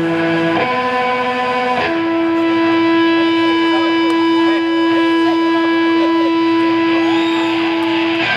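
Live electric guitar solo through an amplifier: a couple of short notes, then one note held and sustained for about six seconds, cutting off at the end.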